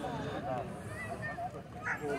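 Greyhounds whining and yelping faintly in short, wavering squeaks, excited as they are held back at the starting line before release.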